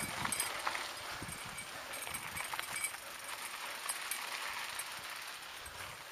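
Mountain bike rolling over a rough dirt and gravel trail: steady tyre noise with irregular knocks and rattles from the bike over bumps, busiest in the first second.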